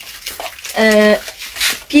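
A woman's voice holding one short, level vowel sound about a second in, like a drawn-out hesitation, followed by a brief hiss.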